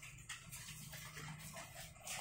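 Quiet room tone with faint rustling handling noise from a camera being carried.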